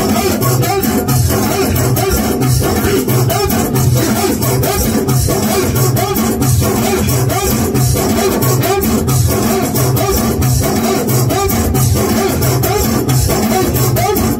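Moroccan popular chaabi music played live by a band with a keyboard: a steady, repeating beat under a melody.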